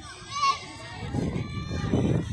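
Children's voices calling out during play, with one short shout about half a second in, then a low rumbling noise under the distant voices from about a second in.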